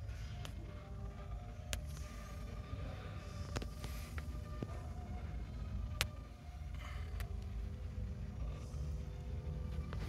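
Indoor room noise: a steady low rumble with faint background music and a few sharp clicks, the loudest about six seconds in.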